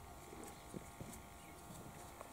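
Knife shaving the skin off a raw green mango: faint scraping with a few small sharp clicks of the blade, the plainest two close together about a second in.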